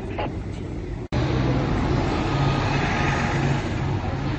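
Street traffic noise with a vehicle engine running nearby as a steady low hum. It turns abruptly louder after a sharp break about a second in.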